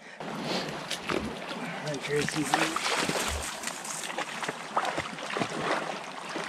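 Shallow brook water sloshing and splashing irregularly as a dog and a person wade through it.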